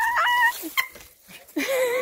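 A small dog whining, three high-pitched gliding whines: one at the start, a brief one just before the middle, and a longer wavering one near the end.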